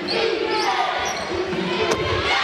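Basketball game sound in an arena: crowd noise and voices throughout. A single sharp knock comes near the end as the jump shot meets the rim.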